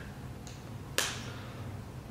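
A single short, sharp click about a second in, over a quiet steady room hum.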